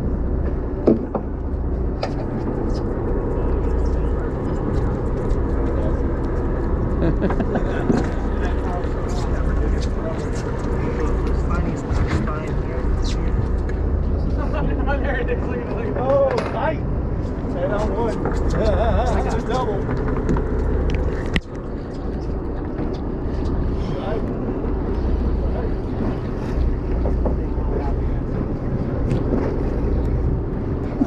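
A boat's engine running steadily, a continuous low hum, with indistinct voices in the background.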